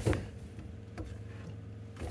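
Two light clicks about a second apart as a loose part in a Fisher & Paykel dishwasher drawer is rocked front to back to show its play, over a faint steady hum.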